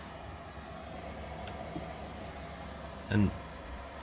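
Steady fan-like hum and hiss of powered-up cockpit equipment, with a faint click about a second and a half in.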